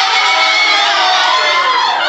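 A loud burst of music with guitar, played as a comedy sting.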